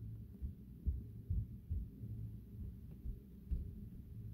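A few faint, dull low thuds over a low hum, typical of handling noise from a handheld phone camera and the filmer shifting his weight.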